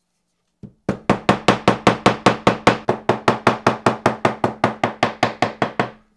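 Small leatherworking hammer tapping a stitched leather piece on a hard block: one light tap, then a steady run of quick, even strikes, about five a second, each with a short ring.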